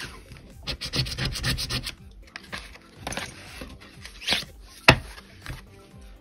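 Scratch-off lottery tickets, stiff cardstock, being slid and shuffled by hand: a few short rubbing, sliding bursts, with one sharp tap a little before the end.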